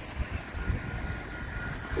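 A city transit bus driving through a U-turn: a steady low rumble of engine and tyre noise mixed with road traffic, with a faint, thin, steady whine coming in about halfway through.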